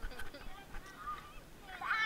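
Children's high-pitched wordless squeals and calls, rising to the loudest call near the end, with small splashes of water.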